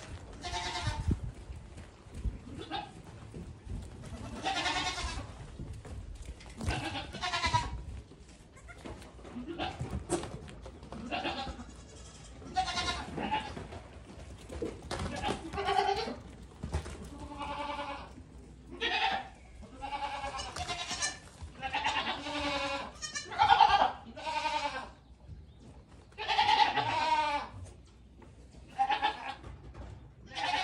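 Many goat kids bleating over and over, short and long calls overlapping, some with a wavering pitch. Low thumps sound underneath in the first several seconds.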